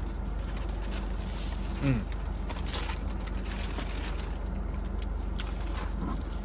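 Eating sounds from a cheesy bean and cheese burrito being bitten and chewed, with a few faint wet clicks and one appreciative "mm" about two seconds in, over a steady low hum.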